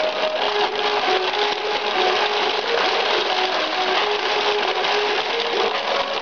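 Ukiyo-e pachinko machine in play: a dense, steady clatter of steel balls rattling through the playfield, with the machine's electronic melody of short stepped notes over it.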